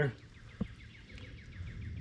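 Faint bird chirping in the background, a quick run of short repeated notes, with a single soft click a little over half a second in.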